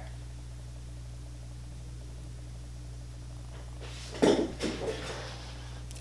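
Steady low hum of room tone, then about four seconds in a few short rustling knocks, the first the loudest.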